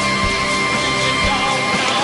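A live electronic rock band playing: a kick drum beating about twice a second under sustained synthesizer tones.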